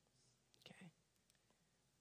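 Near silence: room tone, with one faint, brief vocal sound a little before the middle.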